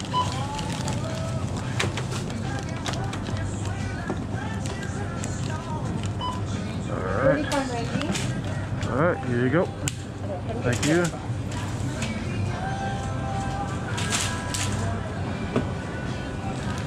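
Checkout-counter ambience: a steady low hum with scattered clicks and rustles of groceries being scanned and bagged, including a burst of plastic-bag rustling near the end. Midway through, a voice rises and falls over faint background music.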